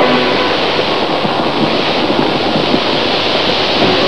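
A steady rushing noise, like wind, from a film trailer's soundtrack, with no clear tones or beat.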